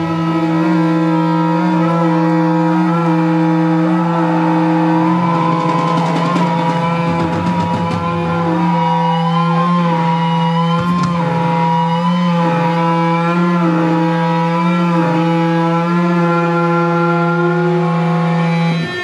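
Live rock band's electric guitar and bass held in a loud, sustained drone through their amplifiers after the drums stop, with wavering feedback tones above the held chord.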